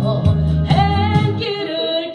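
A woman singing a Korean trot song into a microphone over an accompaniment with a steady bass and drum beat. The bass drops out briefly near the end while the voice carries on.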